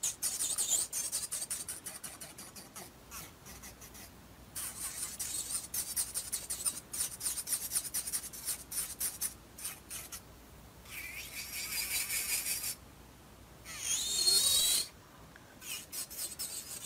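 Short scratchy strokes of a nail tool working on an acrylic nail, scraping and rubbing in quick runs, with a brief pitched whine that rises about a second before the end.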